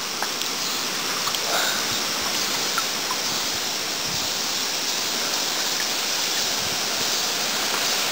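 Steady rush of flowing creek water, with small splashes as a hand swishes a stone arrowhead in the shallows to rinse it.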